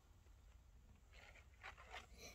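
Near silence: quiet outdoor background, with two faint brief rustles in the second half.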